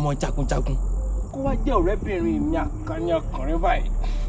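Crickets keep up a steady, high-pitched trill under a man's speech.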